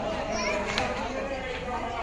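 Crowd of men and boys in a walking procession, many voices talking and calling over one another.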